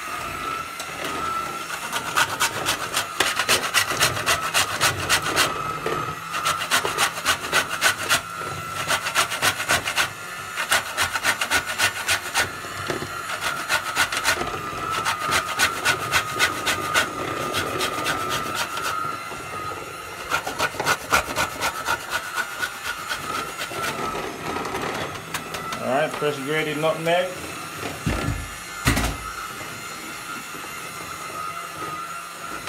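Whole nutmeg being grated on a metal box grater: rapid, rhythmic rasping strokes in runs of a few seconds with short pauses between them.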